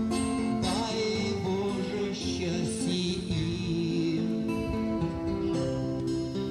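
Guitar played through a small portable amplifier in an instrumental passage between sung lines, its notes and chords changing every half second or so.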